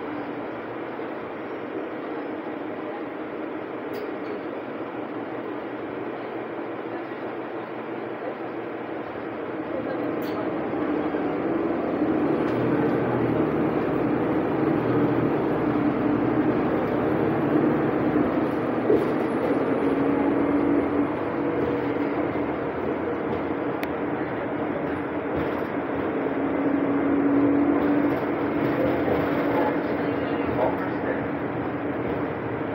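Cabin noise of a 2020 Nova Bus LFS diesel city bus under way: a steady rumble of diesel engine and road noise that grows louder about ten seconds in as the bus gathers speed, and swells again near the end.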